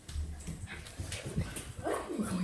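A dog whimpering and giving short yips, with a rising whine near the end.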